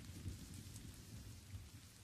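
Quiet recorded rain with a low rumble of thunder, an ambient storm effect at the close of a metal album track, easing slightly in level.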